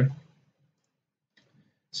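Near silence after a spoken word trails off, broken by a single faint click about one and a half seconds in.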